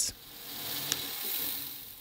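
Drill press boring the tap-drill holes for M5 threads into a steel plate: a soft hiss of cutting that swells and fades, with one faint click about a second in.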